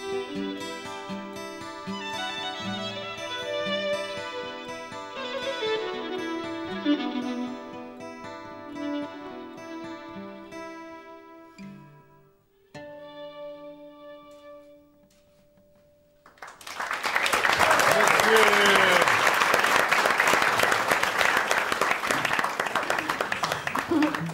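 Acoustic guitar and violin playing the closing bars of a song, ending on a struck chord that rings out and fades. About two-thirds of the way in, loud applause begins and carries on.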